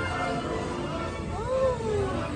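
Ride soundtrack music playing in a dark ride, with a short pitched call about one and a half seconds in that rises and then falls.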